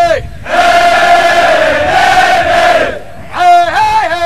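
A large group of Marine recruits yelling one long cry together, lasting about two and a half seconds. Near the end a chanted line resumes.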